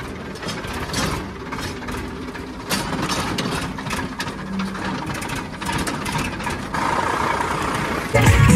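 Tractor diesel engine running at low speed, with frequent knocks and rattles from a towed disc harrow bouncing over a rough track.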